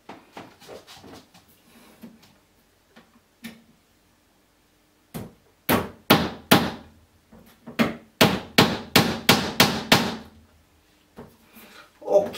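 Claw hammer driving small nails into the edge of a flat-pack wooden cabinet: a few light taps, then from about five seconds in a run of about a dozen sharp strikes, roughly three a second.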